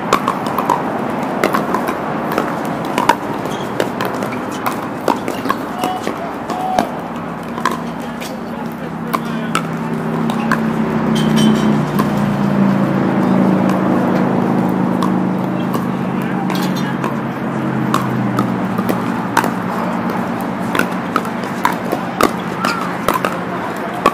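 Pickleball paddles popping against plastic balls: irregular sharp hits from this court and the ones nearby. A murmur of voices rises in the middle stretch.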